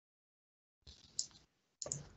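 Computer mouse clicking, picked up by a call microphone: one sharp click about a second in, then two quick clicks near the end.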